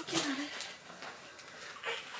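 A voice saying a couple of short words, then quiet room tone with one brief rustle near the end.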